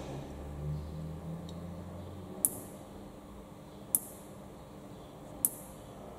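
Electric fence energizer pulsing after being switched on: one sharp tick every second and a half, three in all, with a low hum that stops about two seconds in. The steady pulsing shows the energizer is working normally on the repaired fence, which the owner hears as 'happy'.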